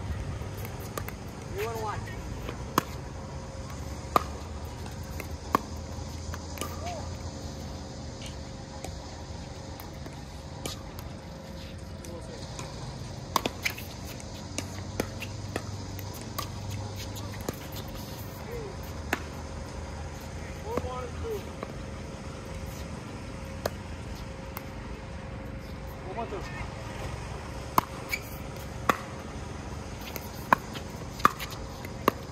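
Pickleball paddles striking a plastic ball in a doubles rally: sharp pops about a second and a half apart, in separate spells, over a steady low rumble.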